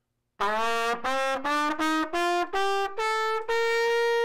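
Trumpet playing a rising scale of about eight separate notes, played with the valves while the lips buzz higher, the last and highest note held long.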